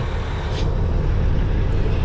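Semi-truck's diesel engine running, heard inside the cab as a steady low rumble.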